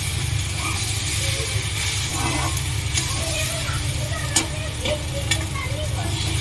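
Slotted steel spatula stirring and scraping scrambled eggs around a steel kadhai while they sizzle, with a few sharp clicks of the spatula against the pan, the loudest about four and a half seconds in. A steady low hum runs underneath.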